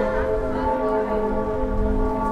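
Cologne Cathedral's bells ringing together, their overlapping tones merging into a loud, steady clang that holds throughout.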